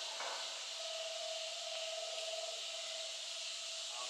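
Steady high-pitched drone of insects in summer woodland, with a fainter steady lower hum that fades out and back in.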